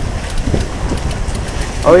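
Wind buffeting the microphone over water rushing past the hull of a sailboat under way, a steady rough noise with irregular low rumbles.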